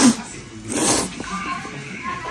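A man slurping noodles off chopsticks: two loud slurps, one at the start and another just under a second in.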